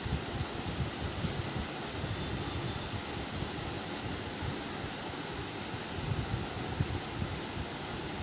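Muffled rustling and low bumping close to the phone's microphone over a steady hiss, while a dog mouths and gnaws playfully at a person's hand.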